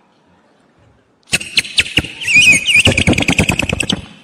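Vocal mimicry of a bird call, done with a small whistle held in the mouth. About a second in come sharp chirping clicks, then a loud warbling high whistle that wavers in pitch. Dense clicking runs through the last second.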